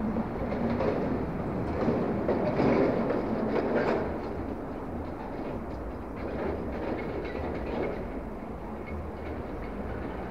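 A train passing over a railway bridge: a rumbling rattle of wheels that is loudest in the first four seconds and then fades to a steadier, quieter run.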